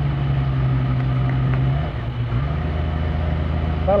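A bogged-down 4x4's engine revving hard as it tries to pull free of floodwater. The engine note holds steady, dips briefly about halfway through, then climbs again.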